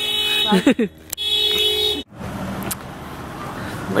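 A steady held tone made of several fixed pitches, with short falling voice-like sounds over it, cut off suddenly about halfway through. A steady hum of street noise follows.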